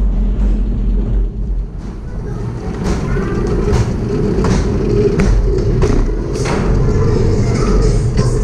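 Wooden roller coaster train rolling slowly into its station: a low rumble of the wheels on the track, then regular knocks a little faster than once a second as the train runs through the station, with music playing.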